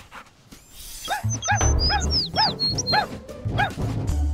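A cartoon dog's quick run of short, yippy barks, about three a second, over background music with a low beat. The run starts about a second in, after a near-quiet start.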